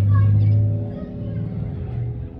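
A low rumble, loudest in the first second and then easing, with people's voices faint behind it.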